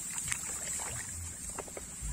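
Rustling and swishing of tall rice stalks brushing against legs and clothing as people push through a paddy field, in short irregular bursts over a steady high hiss.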